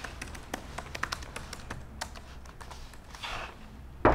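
Typing on a laptop keyboard: quick, irregular key clicks.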